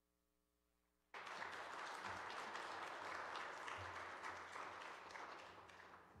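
Congregation applauding a choir's anthem, starting suddenly about a second in after near silence with a faint hum, and thinning out near the end.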